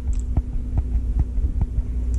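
A person chewing a whiskey-soaked cinnamon bear gummy: soft, even thumps about two or three a second over a steady low hum.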